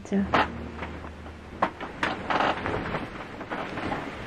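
Handling noise from a camera being moved about: a low steady rumble for about two and a half seconds, two sharp knocks and a short rustle.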